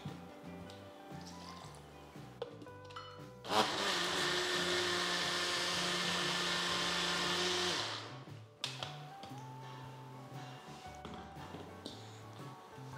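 Electric mixer grinder (mixie) running for about four seconds, grinding a wet appam batter of rice flour, grated coconut, cooked rice and water, then winding down.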